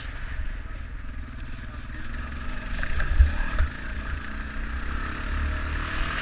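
ATV engine running while riding over rough field ground, with heavy wind buffeting on the microphone. A few knocks and jolts come about halfway through.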